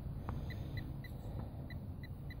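Faint, evenly spaced high-pitched beeps, about three to four a second, over a low rumble.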